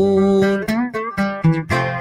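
Oud played solo: a held note, then a quick melodic run of plucked notes about half a second in.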